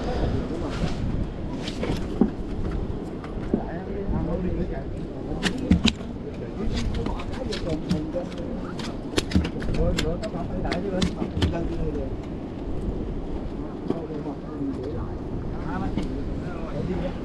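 Outdoor wind rumbling on the microphone, with faint background voices and scattered sharp clicks and taps, bunched together in the middle of the stretch.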